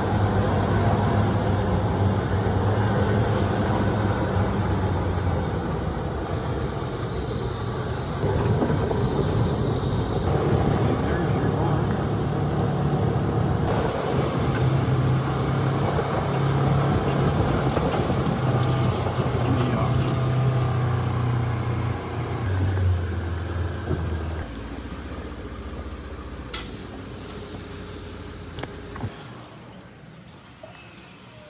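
Polaris side-by-side UTV's gasoline engine running while driving, its pitch shifting with the throttle, with a high whine that falls in pitch over the first third. Toward the end the engine drops to a quieter, lower run as the vehicle slows and stops.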